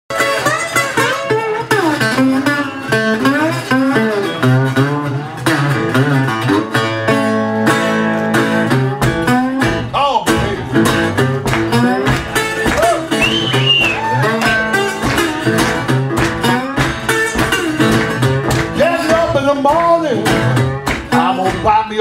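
Solo acoustic blues intro on guitar, plucked and strummed, with harmonica from a neck rack wailing and bending notes over it and holding chords in places.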